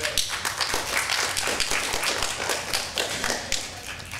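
Congregation clapping, many hands at once, dying away near the end.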